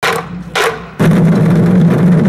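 Sound effects for an animated title card: two quick whooshes, then from about a second in a loud, dense, rough rumble.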